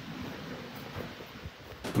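Quiet room tone: a low, steady hiss with a couple of faint soft knocks. A voice starts right at the end.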